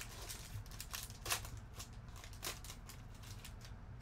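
Foil trading-card pack wrapper crinkling and cards being handled: a run of short, crackly rustles, loudest about a second and a half in and again about two and a half seconds in.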